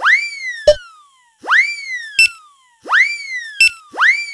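Cartoon sound effect repeating about every second and a half: a whistling glide that shoots up and then slides slowly down, each followed by a short sharp pop or beep.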